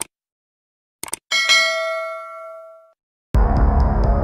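Subscribe-button sound effect: a couple of mouse clicks, then a single notification-bell ding that rings out and fades over about a second and a half. Near the end a music track with a steady throbbing beat starts abruptly.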